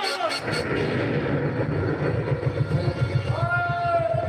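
Fast, steady low drum roll, about eight beats a second, opening with a few sharp strokes; a held musical tone comes in over it near the end.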